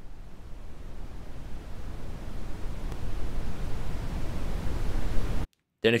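An edited-in rising noise sound effect: a hiss with a low rumble that swells steadily louder for several seconds, then cuts off suddenly near the end.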